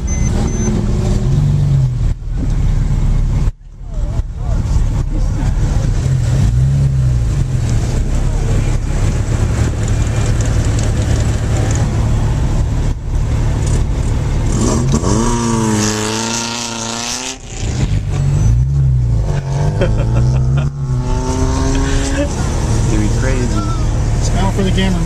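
Car engine heard from inside the cabin during a hard autocross run, its note repeatedly climbing as it revs up and dropping away through the gear changes, with a couple of brief breaks in the sound.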